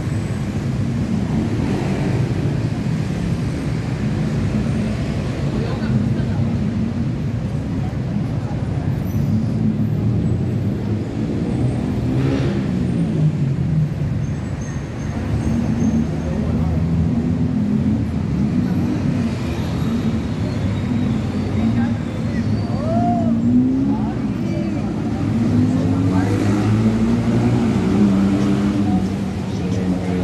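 Street ambience: a steady rumble of road traffic with the indistinct voices of passing pedestrians rising and falling.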